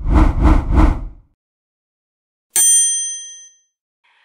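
Intro animation sound effects: three quick, low rushing pulses in the first second, then a single bright ding about two and a half seconds in that rings out and fades over about a second.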